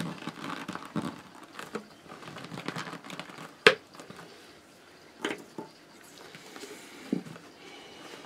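Rustling and light clicking of rolled-newspaper weaving tubes being handled and tucked into a woven base, with one sharp tap about three and a half seconds in and two softer taps later.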